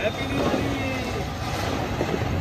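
Flower-pot fountain firework (anar) spraying sparks with a steady hiss, with faint voices in the background.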